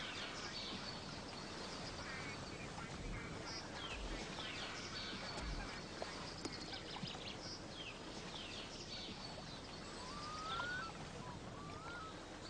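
Outdoor ambience of a steady background hiss with scattered small bird chirps throughout, and a couple of short rising calls near the end.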